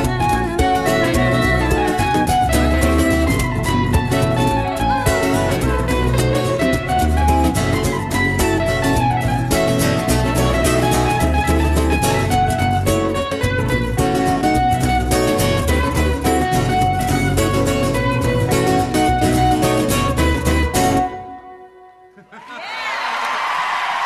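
Live band playing an instrumental passage, with guitar and fiddle over a steady pulsing bass beat. The music stops abruptly about 21 seconds in.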